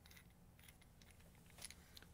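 Near silence with a few faint metallic clicks as a steel bolt shifts inside a drilled pipe nipple being turned in the hands; the clearest click comes near the end.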